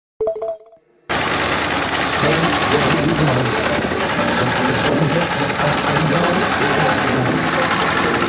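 Engine of a two-wheel walking tractor running steadily with a rapid knocking beat, a voice over it; a brief tone sounds in the first second.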